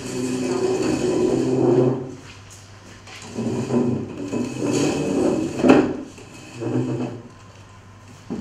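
Metal-legged stacking chairs being lifted, shifted and scraped across a hard floor, with a sharp knock a little before six seconds in as a chair is set down.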